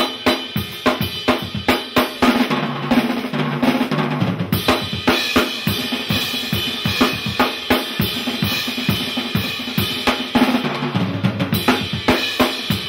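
Drum kit played hard in a fast, busy pattern on snare, bass drum and cymbals, with low bass notes coming in a little after two seconds and again near the end.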